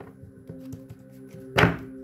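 Soft background music of sustained, droning tones, with a single short thunk about one and a half seconds in and a few faint ticks.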